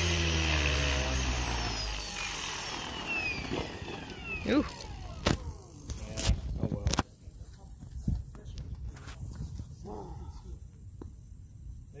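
Blade Fusion 550 electric RC helicopter landing and spooling down: its motor and rotor whine falls steadily in pitch, with a few sharp clicks between about four and seven seconds in, and cuts off abruptly about seven seconds in.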